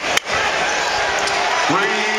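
A basketball bounces once on the hardwood court just after the start, the end of a dribble. Arena crowd noise runs under it, and a voice calls out near the end.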